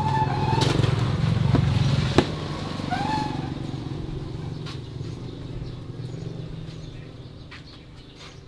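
A motor vehicle's engine drone, loudest at first and fading away over several seconds, as of one passing by and receding. A sharp click comes about two seconds in.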